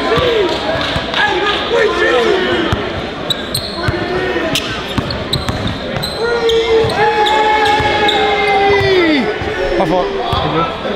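A basketball being dribbled on a hardwood gym floor, sharp bounces ringing in a large echoing hall under loud crowd voices. About six and a half seconds in, one voice holds a long shout for over two seconds before it drops off.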